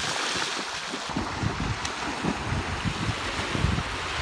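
Wind buffeting the microphone over small waves washing onto a sandy shore.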